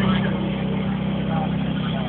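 Portable fire pump's engine running steadily at high revs.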